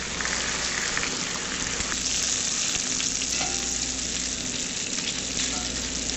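Bacon sizzling steadily as it fries in a cast-iron skillet.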